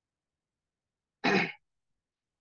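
A man clears his throat once, briefly, a little over a second in.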